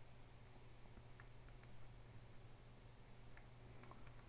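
Near silence with a low steady hum and four faint computer mouse clicks, in two pairs about two seconds apart.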